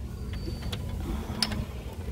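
A few light clicks of glass nail polish bottles knocking against plastic shelf dividers as they are sorted, over a steady low background hum.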